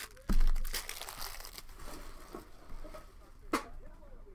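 A Panini Prizm basketball trading-card pack being torn open. A thump comes about a third of a second in, followed by crinkling and tearing of the wrapper, and there is a sharp click near the end.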